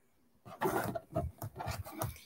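A run of short, irregular rubbing and scraping noises starting about half a second in, handling noise close to the microphone.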